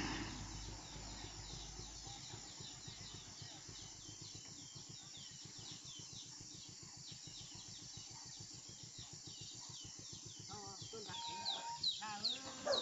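Faint high chirping repeated steadily about three times a second, each chirp a short falling note, over quiet forest ambience. A few louder pitched calls come in near the end.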